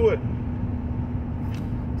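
Steady low road and engine rumble inside a car's cabin while driving, with a constant hum under it.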